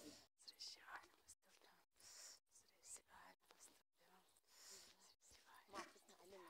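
Near silence, with faint scattered sounds and a brief faint voice near the end.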